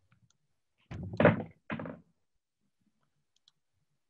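A quick cluster of three dull thumps about a second in, the middle one loudest.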